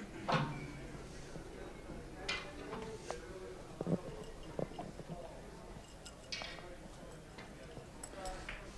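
Billiard cue striking the cue ball softly, followed by a few light clicks of the balls touching in a gentle cannon, about four to six seconds in. Short, low vocal sounds are heard near the start and again later.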